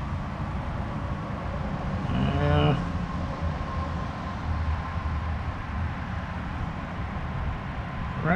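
A steady low hum from an unseen machine in the background, with a faint high tone above it. A brief murmured voice sounds about two seconds in.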